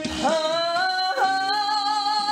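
A man singing a long held note in trot style, with vibrato, over a backing track; the note slides in, steps up in pitch a little after a second in, and is held.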